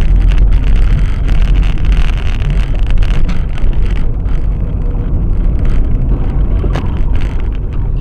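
Loud, steady rumble of a moving car, with road and wind noise, recorded by a dashcam. A single sharp click comes near the end.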